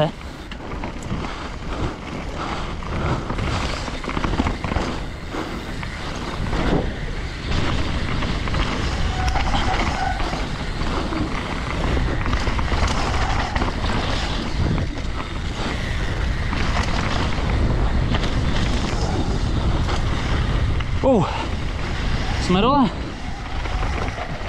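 Wind rushing over a body-mounted action camera's microphone as a Rose Soul Fire freeride mountain bike descends a rooty dirt trail, with the tyres rolling and the frame and chain rattling over small bumps. The noise is steady, with many small knocks along the way.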